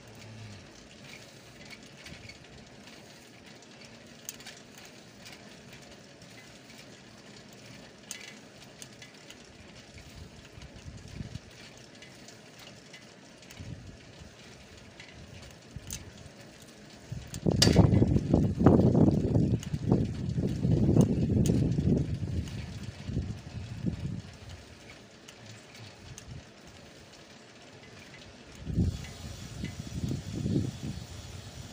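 Wind buffeting the microphone of a camera moving along a road: a faint hiss with small ticks and rattles, then a loud, gusty rumble from about halfway that lasts several seconds, and a shorter gust near the end.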